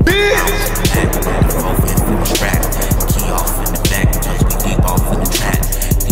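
Hip hop beat playing, with heavy bass, kick thuds and rapid hi-hats.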